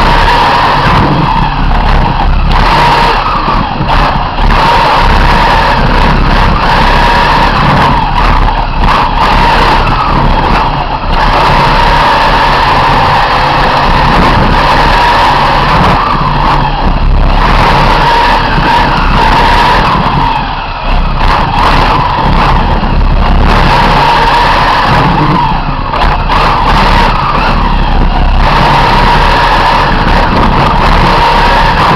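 Onboard sound of a 1:8 scale radio-controlled racing car lapping a track: its motor runs loud and high-pitched at high revs, with a few brief dips in level.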